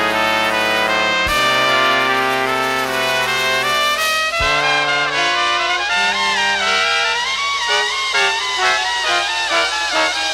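Instrumental intro of a late-1960s jazz-rock recording: a horn section of trumpets, flugelhorns and trombone plays held chords, with new chords entering about a second in and again about four seconds in. In the second half the horns break into moving melodic lines.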